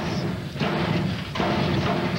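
Metal school locker door being banged and rattled hard and repeatedly, a dense clatter with a short break a little past halfway. The door won't latch shut.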